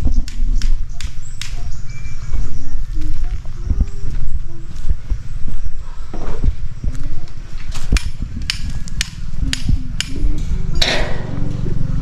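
Footsteps on dirt and gravel with a heavy, uneven low rumble from the handheld microphone on the move, and scattered sharp clicks and knocks, a quick run of them about eight to nine seconds in.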